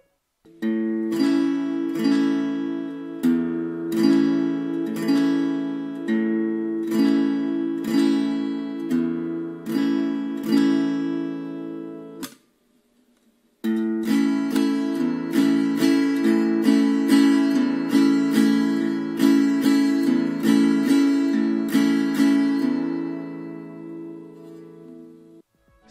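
Acoustic guitar strummed on an A major chord in a ranchera pattern: a single bass note on the fifth string followed by two full downstrums, then a bass note on the sixth string and two full downstrums, repeating. The example plays through, stops for about a second about twelve seconds in, and then plays again, dying away near the end.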